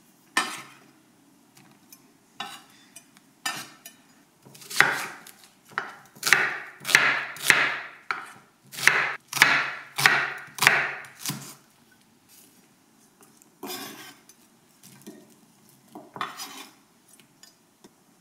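Kitchen knife chopping red onion and garlic on an olive-wood cutting board. A few separate cuts at first, then a run of about a dozen firm strokes in the middle, then a few scattered knocks near the end.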